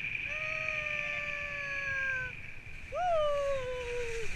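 A person's voice in long, drawn-out wordless calls: two held notes that sag slightly in pitch, then a louder one about three seconds in that swoops up and slides slowly down, over steady wind rush.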